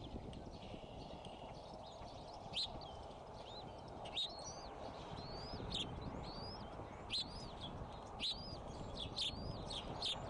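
Bald eaglets peeping in the nest: a string of short, high chirps that rise and fall, faint at first, then louder and coming about once a second from a couple of seconds in, over a steady low hiss.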